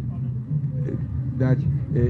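A short pause in a man's speech, broken by a single spoken word about a second and a half in, over a steady low rumble.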